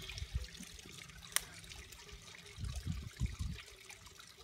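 A plastic-bottle bubble snake being blown: breath pushed through soap-soaked cheesecloth, the foam bubbling out. Wind thumps on the microphone, heaviest near the end, and there is one sharp click about a third of the way in.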